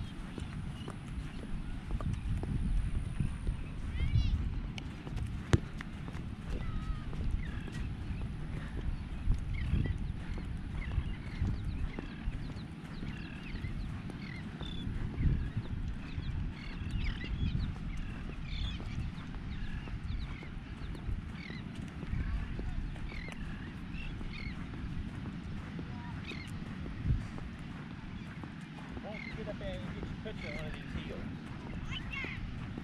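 Footsteps crunching along a sandy beach path, with wind rumbling on the microphone, and faint scattered high chirps over it.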